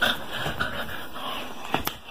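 Rapid, heavy panting breaths, with a sharp click near the end.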